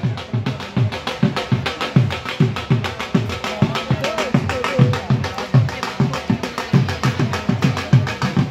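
Dhol drums beaten in a fast, steady rhythm of deep strokes, about four a second.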